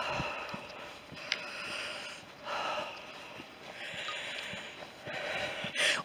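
A walker's breathing close to the microphone: about five noisy breaths, each under a second long, with faint footfalls on the woodland path between them.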